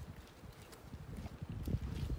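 Footsteps of a person walking, over a low, uneven rumble from the handheld camera's microphone.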